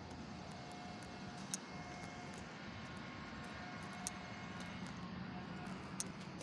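Steady, faint drone of a distant engine. Two sharp clicks stand out, one about a second and a half in and one about four seconds in.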